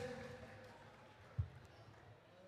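A quiet pause over a stage PA: the end of a man's voice through the speakers fades out, then a single short, low thump about one and a half seconds in.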